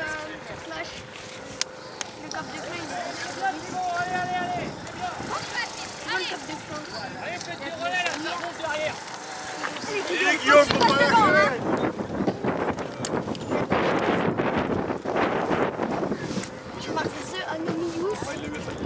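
Indistinct voices of people talking and calling out, loudest about ten seconds in, followed by a rough, noisy stretch.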